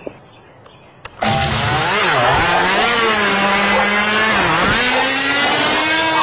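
A motor engine's sound comes in suddenly about a second in and runs at a steady pitch, dipping briefly twice and rising slightly near the end, like revving.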